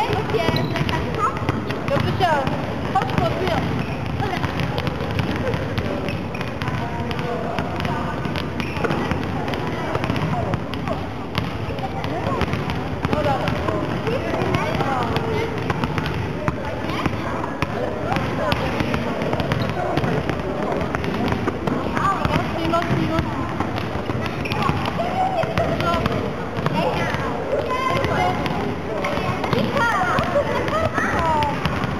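Sports hall din of many children's voices chattering and calling, mixed with volleyballs repeatedly bouncing on the floor and being struck.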